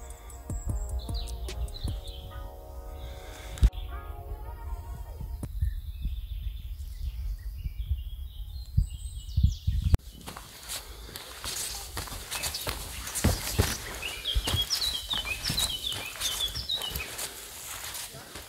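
Soft background music with birds chirping fades out after about five seconds. From about ten seconds in there are footsteps on a forest dirt path, with birds chirping, including a quick run of chirps near the end.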